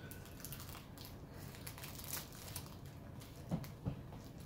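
Plastic candy-bar wrapper crinkling faintly in scattered rustles as it is worked open by hand, with a couple of slightly louder crackles near the end.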